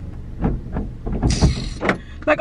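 A few dull thumps and knocks inside a parked car, with a short rush of hiss a little over a second in: typical of a car door being handled and opened.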